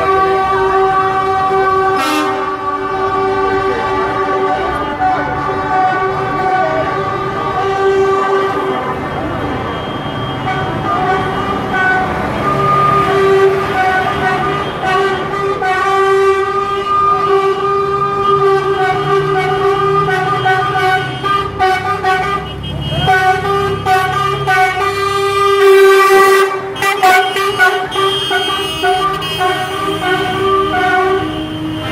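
Lorry air horns sounding almost without a break, a held note with several tones stacked, over passing diesel truck engines; the horn cuts out briefly twice, a little past two-thirds through.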